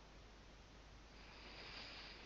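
Near silence: room tone over a video call, with a faint soft hiss in the second half.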